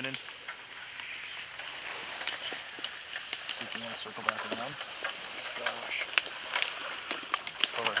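Dry marsh reeds rustling and crackling close to the microphone, a steady hiss full of sharp clicks. About four seconds in, and again briefly near six seconds, short runs of low duck quacks sound over it.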